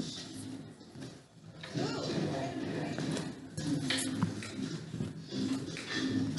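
Faint, indistinct speech, with a couple of short clicks about four seconds in.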